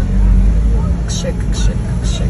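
Steady low rumble of a car moving slowly in traffic, heard from inside the cabin, with voices talking faintly over it.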